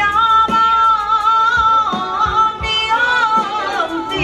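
Taiwanese opera singer holding a long, wavering sung note through a PA microphone, the pitch bending down near the end. A few sharp percussion knocks sound behind the voice.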